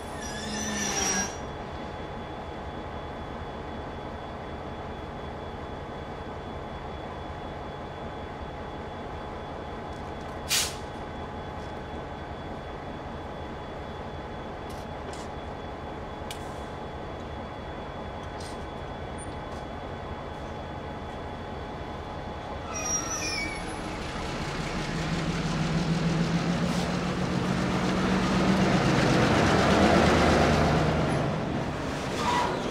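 Freight cars rolling slowly through a railyard with a steady high wheel squeal, brief sharper squeals near the start and about three-quarters of the way through, and one sharp metallic bang about a third of the way in. Over the last several seconds a diesel locomotive's engine and rumble grow louder as it draws near.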